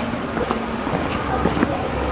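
Outdoor street ambience while walking with a group: wind on the microphone, with a low rumble that swells near the end, over faint murmured voices.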